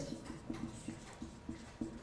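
Whiteboard marker squeaking against the board while a word is handwritten: a run of short, faint squeaks, about three a second.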